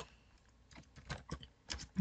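Faint typing on a computer keyboard: a quick run of separate keystrokes starting a little under a second in.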